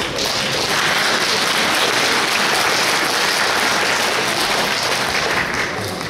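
Audience applauding steadily, dying down near the end.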